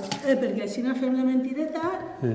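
Speech: a person talking, the words not made out.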